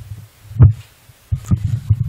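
Low thumps and rumbling from a handheld microphone being handled, one loud knock about half a second in and a few lighter ones near the end.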